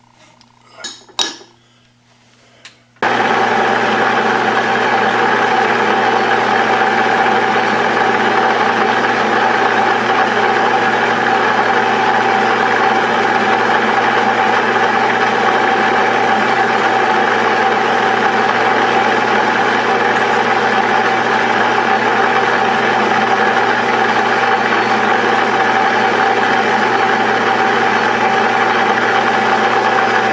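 A few sharp knocks as hands work at the lathe's collet chuck. Then, starting abruptly about three seconds in, a metal lathe running steadily with a constant whine while a carbide insert turns the tail of a jacketed bullet.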